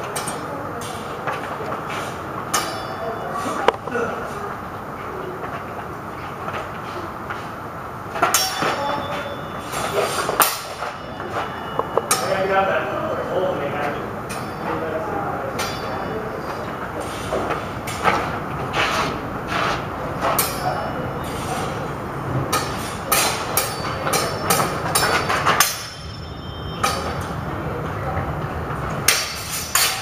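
Metal longsword blades clashing in a sparring exchange: sharp metallic strikes come singly and in quick clusters, over a steady background hum and some faint voices.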